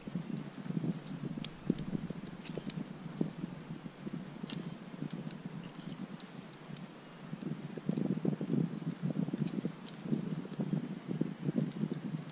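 Wind buffeting the microphone in an uneven low rumble, with scattered light metallic clinks of climbing gear such as carabiners and cams.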